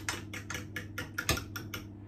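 Fork whisking Yorkshire pudding batter in a glass jug: quick, even clicks of the fork against the glass, about six a second, stopping just before the end.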